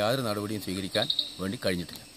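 A man speaking to camera, with an insect, cricket-like, chirping in short bursts behind his voice about a second in.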